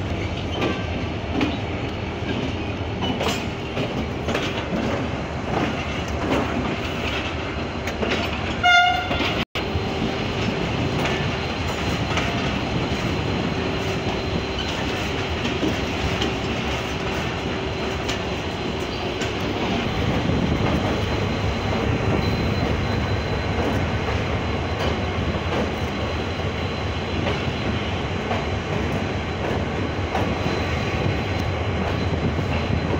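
Diesel-hauled passenger train on the move: steady rumble and wheel clatter over the rails, with the locomotive's engine running close by. A short, loud horn blast sounds about nine seconds in.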